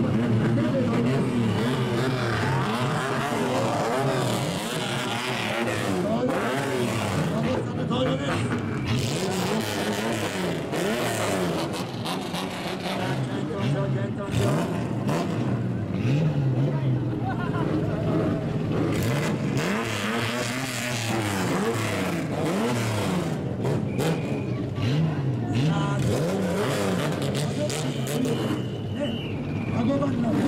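Several straight-piped old Japanese car engines revving over and over, their exhaust notes rising and falling and overlapping, with crowd voices underneath.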